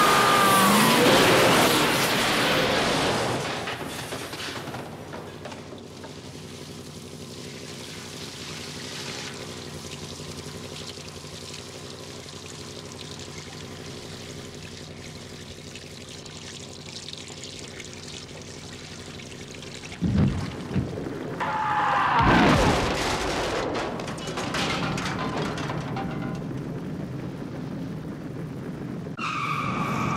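Film sound mix: a 1958 Plymouth Fury's V8 engine racing past with a squeal in the first few seconds, then a quieter steady drone. About twenty seconds in come sudden crashes and then a big blast, followed by the steady rush of a large fire.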